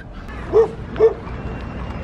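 A dog barking twice: two short barks about half a second apart.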